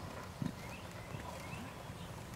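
Hooves of a trotting horse striking a sand arena footing, giving dull, muffled thuds. The strongest thud comes about half a second in.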